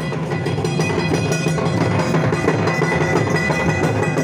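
Live folk drumming on two-headed barrel drums, playing a steady, dense dance rhythm, with held tones sounding over the beat.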